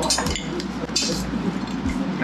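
Metal spoons clinking and scraping against steel thali plates and bowls: a few sharp clinks, one ringing on briefly about a second in.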